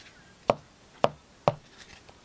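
Three sharp clicks about half a second apart from a clear plastic trading-card holder being handled.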